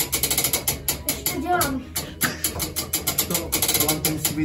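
Hand crank winding a church tower clock movement, its ratchet pawl clicking rapidly and evenly as the weight is wound up.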